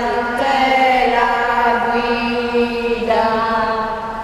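A hymn sung in church during communion, in slow, long-held notes that change pitch about every second or two.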